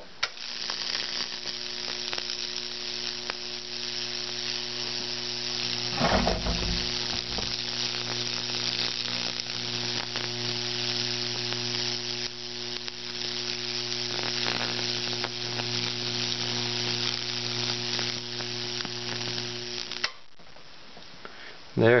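Microwave oven transformer at about 2 kV buzzing with a steady mains hum while high-voltage current arcs through baking-soda-wetted plywood, sizzling and crackling as the Lichtenberg burn spreads. There is a brief louder burst about six seconds in. The hum and crackle cut off suddenly when the power goes off, two seconds before the end.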